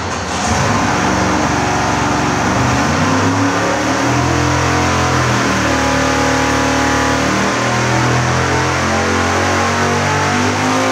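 Roots-blown 555 cubic-inch big-block Chevrolet V8 running on an engine dyno, revving up from low rpm at the start of a full-throttle nitrous pull.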